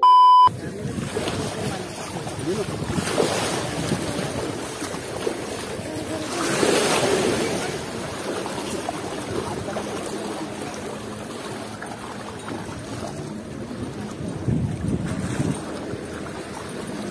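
A brief electronic test-tone beep for the first half second, then water sloshing and splashing around legs wading through shallow water, with wind on the microphone; the splashing swells twice.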